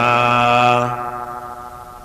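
A male voice chanting a Buddhist Pali chant holds the last syllable of a line on one steady pitch for about a second, then the note fades out.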